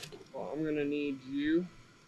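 A person talking briefly for about a second, the words not made out, after a short click at the start.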